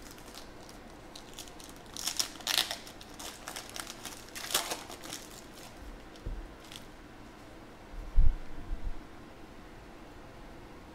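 A foil trading-card pack being torn open, its wrapper crinkling in two bursts, about two and four and a half seconds in. Later come a couple of low thumps, the loudest near the end.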